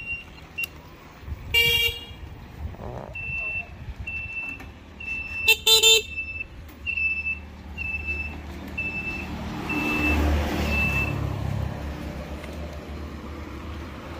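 An electric scooter's horn sounding in two short toots, with its turn-signal buzzer beeping at one steady pitch about every two-thirds of a second for several seconds. The scooter is being function-tested before shipping. A low rumble swells near the end.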